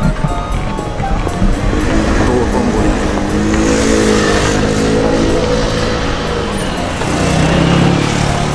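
A car's engine passing on a city street, its steady pitched note building about two seconds in and fading near the end, with music underneath.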